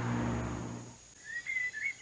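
The last low note of a jingle fades out over about the first second. Faint, high bird chirps follow near the end.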